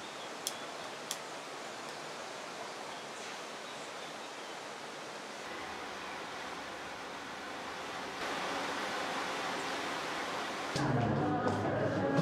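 Steady hiss-like background noise, with two sharp clicks about half a second and a second in. It grows a little louder later on, and voices come in near the end.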